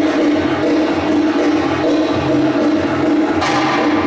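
Belly-dance drum-solo music: a goblet drum (darbuka) beating a steady rhythm over a held tone, with a sharp accent about three and a half seconds in.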